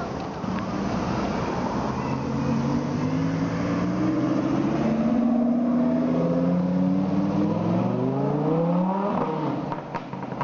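A car engine revving up as the car accelerates, its pitch climbing over several seconds to a peak near the end before it cuts off.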